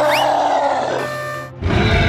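Cartoon creature growl sound effects: a growl that sweeps up briefly and then sinks slowly in pitch, followed about one and a half seconds in by a deep, loud rumbling growl.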